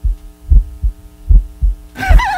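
Heartbeat sound effect: low double thumps about every 0.8 s, over a steady droning hum.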